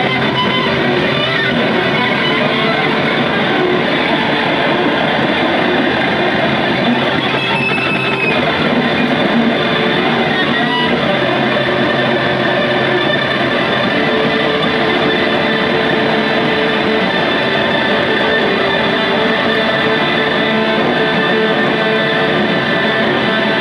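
Two electric guitars played loud in a free noise improvisation: a dense, steady wash of distorted guitar noise with a few held tones rising out of it.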